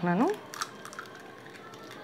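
A voice trails off, then a faint click about half a second in as an egg's shell is split open and the egg drops into the chicken marinade.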